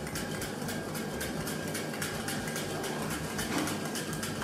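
Fine, rapid crackling and sizzling from a hot clay donabe of rice topped with raw wagyu slices, steady throughout.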